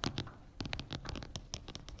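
Chalk writing on a blackboard: a quick, irregular run of taps and short scratches as formulas are written.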